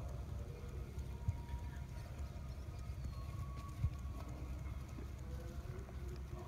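Horse hooves on sand arena footing, over a steady low rumble, with two sharper knocks.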